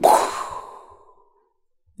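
A man's mouth-made "puff!", a breathy burst imitating a punch landing, fading out over about a second.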